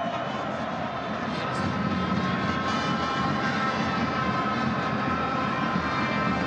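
Football stadium crowd: a steady, unbroken din with several held tones running through it.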